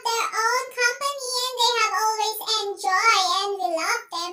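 A high-pitched singing voice, childlike in pitch, holds long wavering notes in phrases with short breaks between them.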